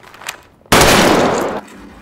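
A single revolver gunshot from the TV show's soundtrack: one sudden, loud shot about two-thirds of a second in, with a tail that dies away over most of a second.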